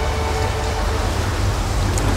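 Steady hiss of falling water, an even wash of noise over a low hum.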